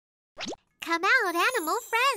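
A moment of silence, then a quick upward-sliding pop sound effect about half a second in, followed by a high cartoon-style voice whose pitch wobbles up and down in a singsong way as a new children's song starts.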